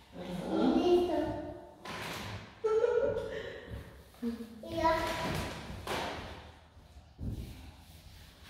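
A small child's high-pitched voice, vocalizing in short bursts without clear words, with a few dull thumps, one about two seconds in and one near the end.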